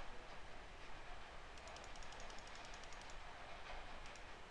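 Faint computer mouse clicks, several in quick succession about one and a half to two seconds in, over a low steady background hiss.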